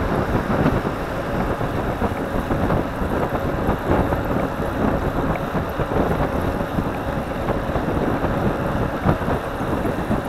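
Wind buffeting the microphone of a camera mounted on a moving bicycle: a continuous, gusty rushing rumble.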